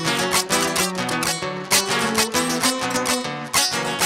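Strummed guitar accompaniment playing steady rhythmic chords over a stepping bass line: the instrumental interlude between sung, improvised décima verses.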